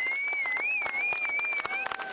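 A crowd clapping their hands, the claps coming thick and uneven. A single high held note, wavering slightly in pitch, sounds over them and stops near the end.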